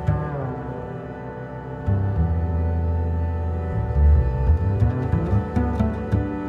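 Background music: slow, dark-toned instrumental music of held notes, with deep bass notes coming in about two seconds in and swelling near the middle.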